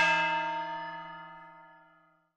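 A struck, bell-like chime rings out with several steady tones and fades evenly away to silence by the end.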